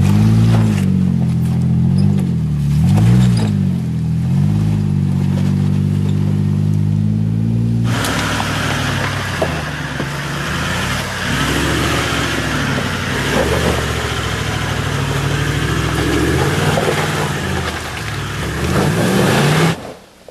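Jeep Wrangler JK engine revving up and down several times as it crawls over rock in low range, then holding steadier. About eight seconds in it cuts abruptly to another four-wheel drive's engine running lower under a strong steady hiss, with small rises and falls in revs.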